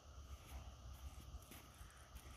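Near silence: a faint steady low rumble, with a few faint soft footsteps on sand.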